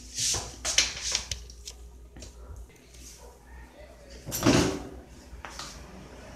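Handling noises of kitchen things being moved: a few light knocks in the first second, then a louder half-second swish about four and a half seconds in.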